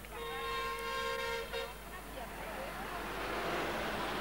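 A vehicle horn gives one steady blast of about a second and a half, then a short second toot. Then a bus passes close by, its noise getting louder to a peak near the end.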